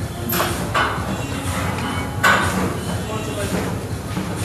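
Gym background noise: indistinct voices over a steady hum, with a few sharp clanks, the loudest about two seconds in.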